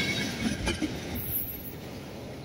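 Passenger train coaches rolling away on the track, their running noise fading as the last coach moves off, with a single wheel knock over a rail joint a little under a second in.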